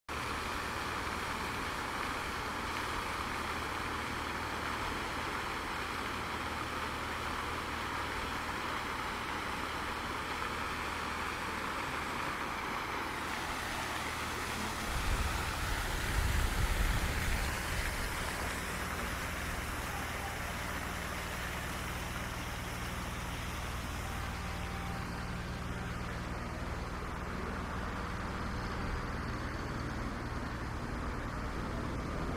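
Open-air street ambience: a steady hiss of splashing fountain water and background traffic. About halfway through, a louder low rumble swells for a few seconds, then fades back.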